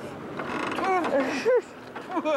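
High-pitched squeals and laughter from a young girl, a few short cries that swoop up and down about halfway through, over water splashing at the start.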